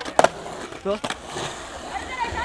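Skateboard wheels rolling on concrete: a steady, even rolling noise.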